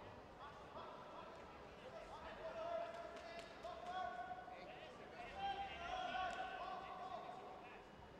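Raised voices calling out with long, drawn-out vowels, several held for a second or more, mixed with a few light knocks.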